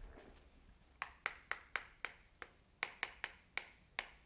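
Chalk striking a chalkboard as characters are written: a quick run of sharp clicks, about four a second, starting about a second in.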